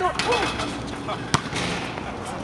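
A basketball coming down from a dunk and smacking once on an outdoor asphalt court, a single sharp crack a little over a second in, with men's voices.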